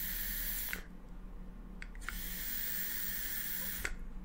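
Vaping from a Marquis rebuildable dripping atomizer on a box mod. A hissing drag through the atomizer's airflow stops just under a second in. After a short pause comes a second long breathy hiss of about two seconds as the vapour cloud is blown out.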